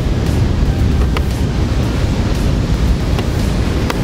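Wind buffeting the microphone over the steady wash of surf breaking on the rocks, with a couple of faint ticks.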